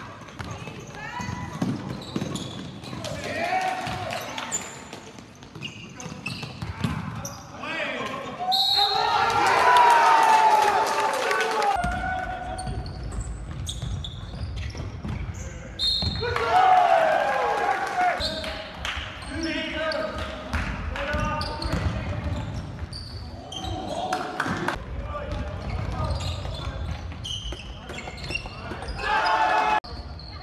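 Live indoor basketball game sound in a gym: a ball bouncing on the court, with players and onlookers shouting and calling out. The background changes abruptly about 12 and 16 seconds in.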